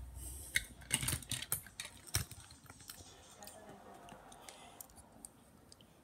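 Scattered light clicks and taps of handling, mostly in the first two seconds, as a small die-cast toy car is swapped and handled close to the microphone.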